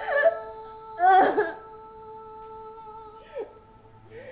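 Soft background music with long held notes, over which a woman's voice makes three short wordless sounds. The loudest comes about a second in, and a faint one comes near the end.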